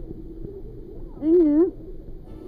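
One short call, about half a second long, whose pitch rises, dips and rises again, over a muffled low underwater rumble.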